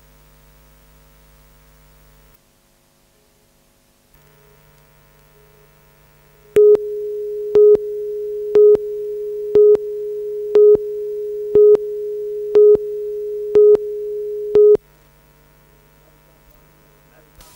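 Broadcast videotape line-up tone: a steady single tone broken by nine short, louder beeps, one a second, starting about six and a half seconds in and cutting off near the end. Before it there is only a faint hum, which drops briefly to near silence.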